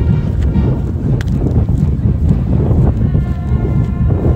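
Wind buffeting a phone's microphone outdoors: a loud, uneven low rumble throughout, with a brief click about a second in.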